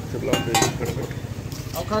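A few light metal clinks of steel utensils at a street-food griddle, about half a second in, over background voices and street noise.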